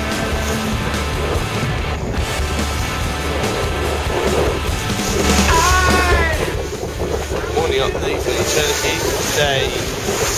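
Music cuts off about two seconds in. Then comes on-deck sound from a racing sailing yacht at sea: wind buffeting the microphone and water rushing past, with crew voices from about halfway through.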